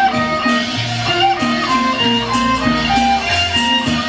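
Instrumental accompaniment from a Taiwanese opera (gezaixi) band playing between sung lines: a stepping melody over a repeating bass figure, with no singing.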